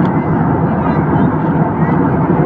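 Steady cabin noise of an Airbus A320-family airliner in cruise, heard inside the cabin: an even, loud rush of airflow and engine noise.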